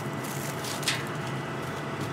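Steady low machine hum under an even rush of wind noise, with a brief rustle just under a second in.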